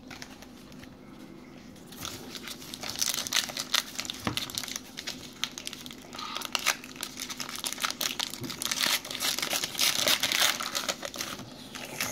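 Baseball card pack wrapper crinkling and tearing as it is opened, a dense run of crackles starting about two seconds in.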